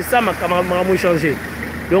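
A voice talking continuously, with the low steady engine hum of a white Toyota Land Cruiser Prado moving slowly past underneath.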